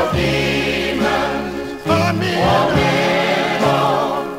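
Recorded male gospel quartet singing in harmony, with held low bass notes underneath.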